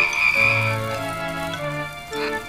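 Cartoon background music playing a simple stepping tune, with a high-pitched sustained sound effect in about the first second.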